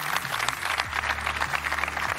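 Crowd of spectators clapping.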